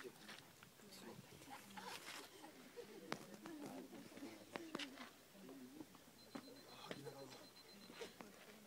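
Faint, indistinct chatter of several people talking at a distance, with a few sharp clicks.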